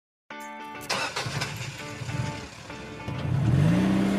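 A short music jingle opens with a held chord, joined by a car engine sound effect that starts up and revs, its pitch rising near the end.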